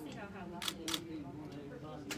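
Two sharp clicks about a fifth of a second apart, over low background talk.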